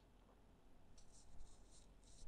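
Near silence: faint room tone, with a soft high hiss from about a second in.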